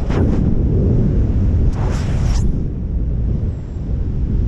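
Heavy wind rush on the camera's microphone during a wingsuit flight: a dense, steady low rumble with two short surges of hiss, one right at the start and one about two seconds in.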